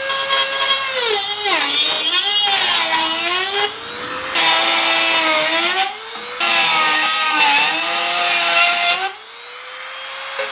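Corded Dremel rotary tool with a cut-off wheel trimming the ends of steel bolts: a high motor whine whose pitch sags each time the wheel bears into the metal and climbs back as it eases off. It runs in three spells with short breaks about 4 and 6 seconds in, stops briefly near the end, then starts again.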